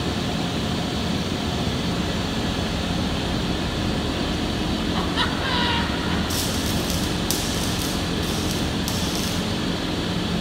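Steady hum of shop fans and machinery; from about six seconds in, an arc welder crackles in short, stop-start spurts as the base of a steel column is welded down.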